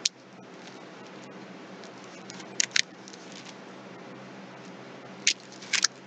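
Thin Bible pages being handled and turned, giving a few short, crisp paper crackles: one at the start, a pair about two and a half seconds in, and a few more near the end, over a low steady hum.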